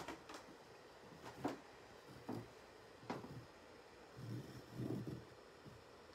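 Faint, scattered taps and short scratches of a felt marker drawing seed marks on rug-hooking backing, about four light strokes in the first few seconds, then a soft low murmur later on.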